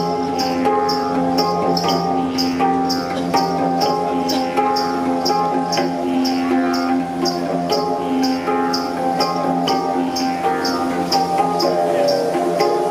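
Handpan (hang drum) struck by hand, its melodic notes ringing over the steady drone of a didgeridoo. A high, rattle-like tick keeps an even beat about three times a second.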